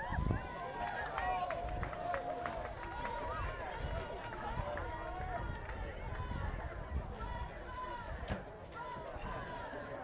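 Indistinct voices of players and spectators calling and shouting around an outdoor football field, with a low rumble under them and a few sharp clicks.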